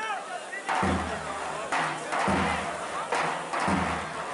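Heavy drum beats about every second and a half, typical of the davul drum played at oil wrestling matches, over crowd noise and voices.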